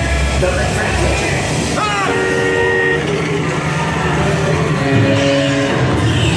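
Ride audio inside the Radiator Springs Racers dark ride: a steady low rumble of the ride vehicle under indistinct voices. A quick falling sweep about two seconds in is followed by a held chord of horn-like tones, and another comes about five seconds in.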